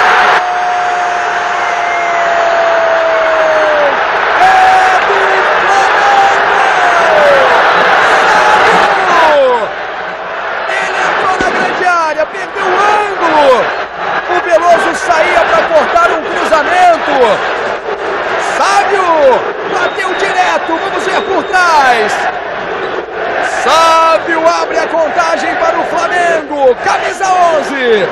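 A commentator's drawn-out goal cry held on one note for about four seconds, falling at the end. It gives way to a stadium crowd cheering and shouting, with many overlapping yells and scattered sharp cracks.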